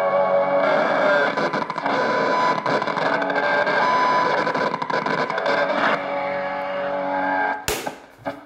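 Philips two-band (SW/MW) portable radio being tuned by hand: music from a station comes through its speaker, mixed with static and tuning noise as the dial moves. A sharp crackle comes near the end.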